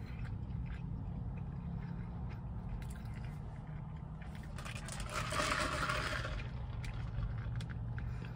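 Someone eating fast food: chewing, with small clicks from the food and its paper wrapper, and one louder crackly burst lasting about a second just past the middle. A steady low hum runs underneath.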